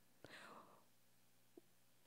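Near silence in a small room, with one soft breath from the speaker about a quarter second in and a faint mouth click near the end.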